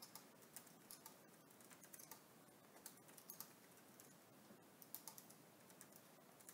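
Faint typing on a computer keyboard: an irregular run of light key clicks in small clusters.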